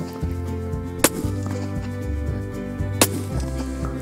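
Background music with two sharp cracks about two seconds apart, about a second in and at three seconds: shots from a suppressed Tikka T3 rifle in .25-06 fired from the prone position.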